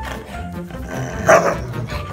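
A husky gives a single short bark about a second in, over background music.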